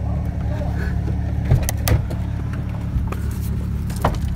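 Pickup truck engine idling with a steady low rumble, with a couple of light clicks about a second and a half in.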